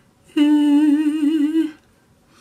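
A woman hums a single held note for just over a second, with a slight waver.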